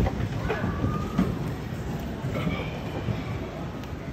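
A large audience rising together from metal folding chairs: a dense low rumble of chairs shifting and feet shuffling, with scattered knocks and clatter.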